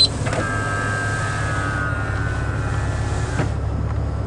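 The motorised navigation screen of a 2005 Honda Odyssey whirring for about three seconds as it tilts back up over the in-dash six-disc CD changer, with a click as it starts and a faint click as it stops.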